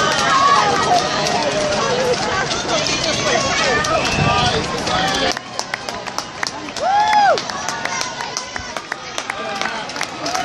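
Roadside crowd cheering and calling out to passing marathon runners, over the patter of many running footsteps on the road. About seven seconds in, one long rising-and-falling whoop stands out.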